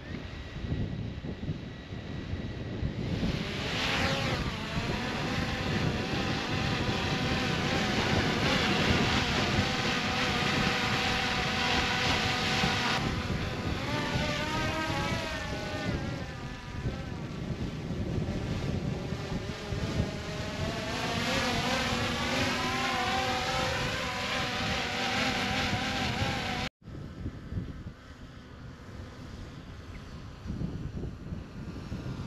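DJI Mini 4 Pro quadcopter's four small propellers spinning up for takeoff, rising in pitch about three seconds in. It then holds a steady high-pitched hum made of several tones that waver and sweep as the drone climbs. Light wind rumbles on the microphone beneath it. The sound breaks off abruptly near the end and returns quieter.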